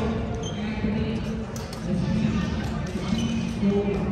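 Badminton rally: rackets striking the shuttlecock several times with sharp clicks, over background chatter of voices echoing in a large sports hall.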